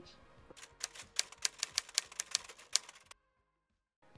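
Typewriter key clicks, a quick run of about six a second lasting over two seconds, that stop abruptly into dead silence; a sound effect for a new title appearing.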